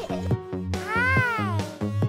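A single cat's meow, rising then falling in pitch, over the backing track of a children's song with a steady beat.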